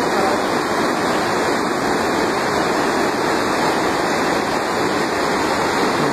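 A swollen, muddy river in flood rushing past, a loud steady rush of fast, churning water.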